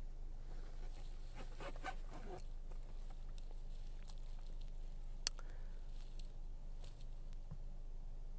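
Faint handling noise: soft rustles and small clicks, with one sharper click about five seconds in, over a steady low hum.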